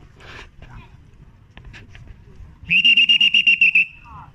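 A pea whistle blown in one loud, trilling blast lasting about a second, near the end.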